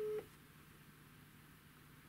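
Telephone ringback tone heard from a mobile phone held to the ear: a single steady tone that cuts off suddenly just after the start, leaving faint room tone. It signals that the called number is ringing.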